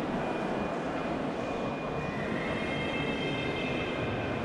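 Steady, even background din of a large stone-walled indoor hall, with no single distinct event. Faint thin high tones join it about halfway through.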